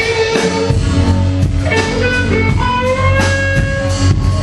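Electric guitar played live through an amplifier: ringing held notes over a sustained low note, with a note bent upward a little past halfway.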